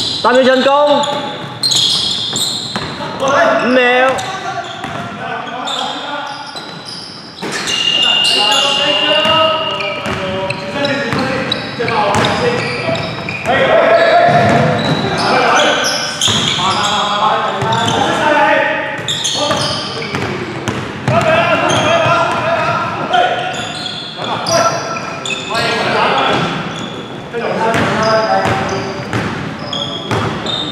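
Indoor basketball game on a wooden court: the ball bouncing and players' voices shouting, echoing in a large hall, with a steady high tone held for about two seconds roughly a quarter of the way through.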